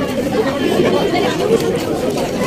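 Steady chatter of many people talking at once, with overlapping voices and no single clear sound standing out.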